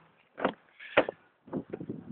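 Handling noise: two dull knocks, about half a second and a second in, with faint rustling, as things are moved about at close range.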